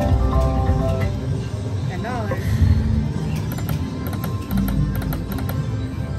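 Electronic music and chimes from a video slot machine as a small win is credited, with sustained chime notes in the first second. Several sharp clicks follow a few seconds in, over a steady casino background din.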